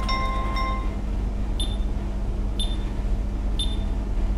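Sound effects from an animated title graphic. A held electronic chord dies away in the first second, then three short, high chime-like pings sound about a second apart over a steady low hum.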